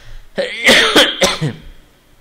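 A man coughing and clearing his throat, starting about half a second in and lasting about a second, as loud as the talk around it.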